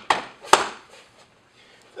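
Two sharp impacts, the second and loudest about half a second in: strikes landing on a training partner lying on the mat during a martial-arts takedown drill.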